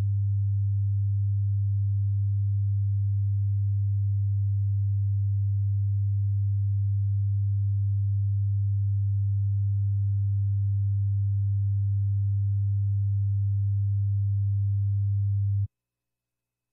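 A steady, low, pure test tone fed into the meeting's audio line. It starts suddenly, holds unchanged, and cuts off abruptly about a second before the end.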